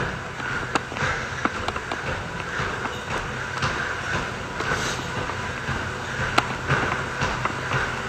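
Steady low hum and hiss of a large indoor space, with scattered light clicks.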